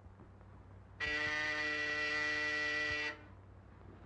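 Office intercom buzzer sounding one steady buzz of about two seconds, starting a second in and cutting off sharply.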